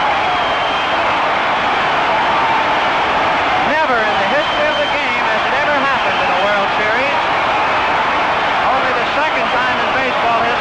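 Large stadium crowd cheering in a steady roar, with individual shouts rising above it now and then, on an old broadcast recording.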